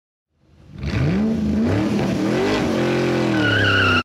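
Car engine revving, its pitch climbing and bending before holding steady, with a tire squeal coming in near the end; it fades in during the first second and cuts off suddenly.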